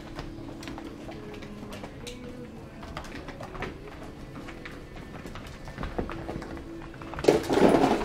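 Golden retriever puppies making soft, low cooing whimpers, with faint clicks of claws on the plastic grate and floor mat. A woman's laughter breaks in near the end.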